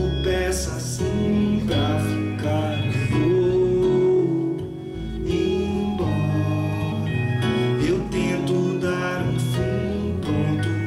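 Live band of acoustic guitar, electric bass and electric guitar playing an instrumental passage of a song, a melodic line moving over the strummed chords.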